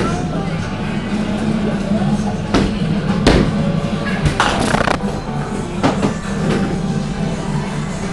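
Bowling alley ambience: background music and voices, with several sharp knocks and a short clatter around the middle.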